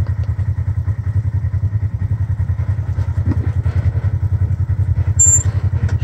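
Polaris RZR XP side-by-side's engine running at low revs with a steady, evenly pulsing throb as the UTV crawls over slickrock. A brief high-pitched chirp comes about five seconds in.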